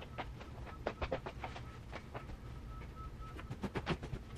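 Quilted comforter being spread and smoothed over a bed by hand: a run of soft rustles and light knocks, bunched about a second in and again near the end.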